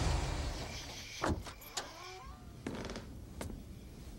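A car engine rumbling low and fading away, then a car door shutting about a second in, followed by short creaking squeaks and a few soft knocks.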